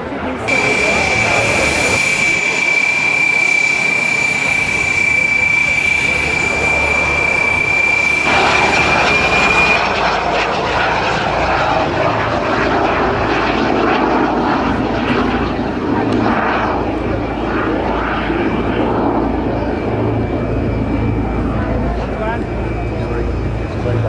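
Small jet aircraft passing in flight: a steady, high-pitched turbine whistle over jet noise for the first nine seconds or so. After that comes a broader, rougher jet roar without the whistle.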